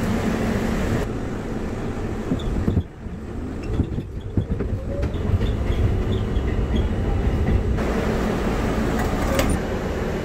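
R32 subway train heard from aboard, running with steady rumbling and rail noise, in spliced segments that change abruptly about one, three and eight seconds in.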